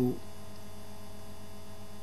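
Steady electrical mains hum in the recording, a constant low drone that does not change, with the end of a spoken word at the very start.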